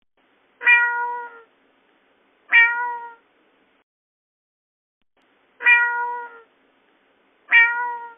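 Domestic cat meowing four times, in two pairs, each meow lasting under a second on a steady pitch that dips slightly at the end.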